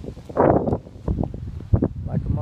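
A rush of wind over a phone's microphone about half a second in, followed by a few short low bumps of the hand-held phone being moved.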